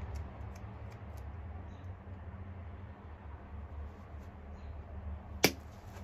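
Pressure flaking a Flint Ridge flint point: the flaker's tip scrapes and ticks faintly on the stone's edge, then one sharp snap near the end as a flake pops off.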